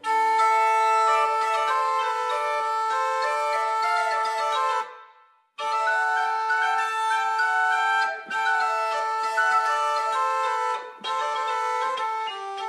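Medieval portative organ playing a melody of sustained flute-like pipe notes over a steady held drone pipe. The sound breaks off between phrases, once fully about five seconds in and briefly twice more.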